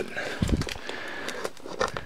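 Hands handling a padded paper mailer: scratchy rustling and small clicks, with a dull bump about half a second in.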